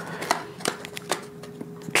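Plastic-and-paper blister packaging crackling, with several sharp clicks, as fingers work at it to free a tiny flash drive that is stuck inside.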